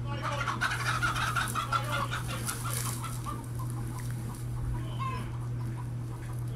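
Chickens squawking and clucking in alarm as a coyote attacks the flock: a dense burst of calls over the first three seconds, then scattered calls. A steady low hum runs underneath.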